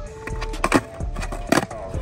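Skateboard on concrete during a flat-ground trick: two sharp clacks of the board about a second apart, the pop and then the landing, over background music.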